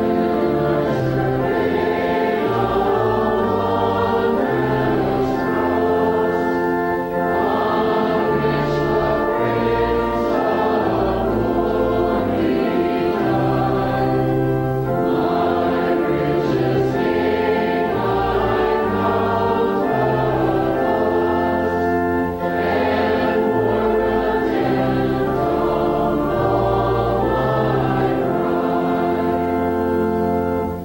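A congregation singing a hymn with church organ accompaniment: sustained chords over a bass line that moves in slow, held notes.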